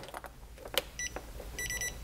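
A multimeter's button clicks, then the meter gives a short high beep as it switches to non-contact voltage mode. Near the end a rapid run of high beeps follows, the meter's alert that it senses a live wire.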